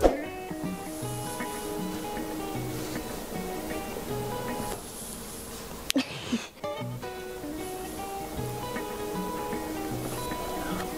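Background music with held notes and a steady bass beat. A sharp click about six seconds in, where the music briefly drops.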